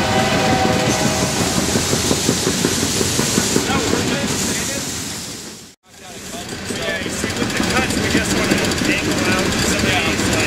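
A freight train rolling past, a steady rumble with a rapid clatter of the rail cars. The sound fades to silence for a moment a little past halfway, then comes back.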